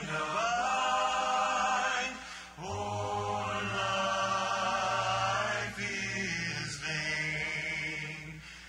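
Slow singing with long held notes, in phrases separated by brief breaks.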